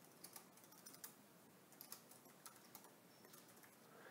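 Faint computer keyboard typing: about ten soft, irregularly spaced key clicks as a short phrase is typed.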